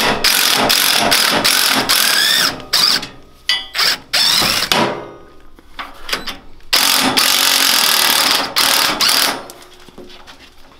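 Cordless impact wrench with a socket loosening a go-kart's rear shock-absorber bolts, hammering in several runs: a long one at the start, two short bursts, a pause, then another long run ending shortly before the end.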